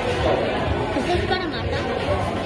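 Steady babble of many people talking at once in a busy eatery, with no single voice standing out.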